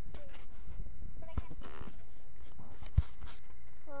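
Handling noise from a handheld phone camera: a steady low rumble with a few small clicks and a sharp knock about three seconds in, and faint voices in the background.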